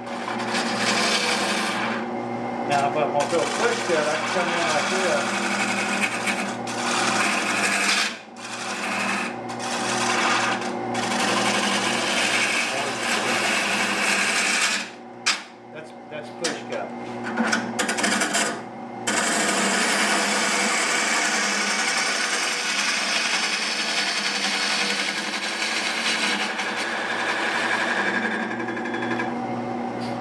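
Wood lathe spinning a bowl blank while a gouge cuts into it: a steady cutting hiss over the lathe's hum, broken a few times in the middle by short gaps when the tool is lifted off the wood.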